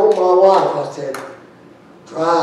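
Only speech: a man preaching, one short spoken phrase that ends a little past a second in, then a pause.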